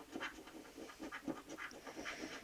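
A coin scratching the coating off a lottery scratchcard in quick, faint, repeated strokes, several a second.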